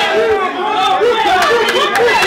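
Several men's voices talking over one another in a heated exchange, with crowd chatter around them and a few sharp clicks.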